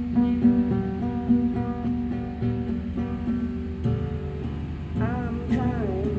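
Acoustic guitar being played in a repeating picked pattern of chords, with notes sounding at a steady pace.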